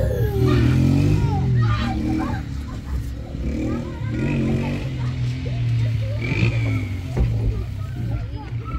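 Young children's voices and calls, brief and scattered, over a steady low drone.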